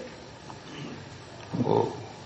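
A pause with low room tone, then a man's voice giving one short drawn-out syllable near the end.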